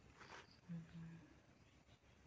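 Near silence: a short soft hiss near the start, then a faint hummed "hmm" about a second in.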